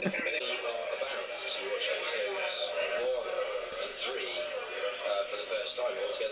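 A man talking in a played-back video clip, quieter than a voice in the room, with faint music underneath.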